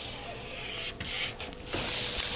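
Pen scratching across brown pattern paper in about three long drawing strokes while a pattern line is ruled in.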